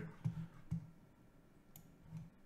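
A few faint clicks of a computer mouse, selecting a menu item to open a folder.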